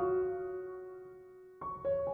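Background piano music: a held chord fades away, and new notes begin near the end.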